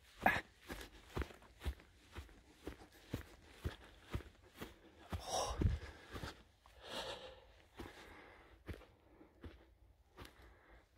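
Footsteps of a hiker walking up a grassy moorland path, about two steps a second, with two audible breaths about five and seven seconds in.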